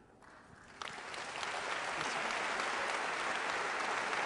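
Audience applauding, starting about a second in and building to a steady level.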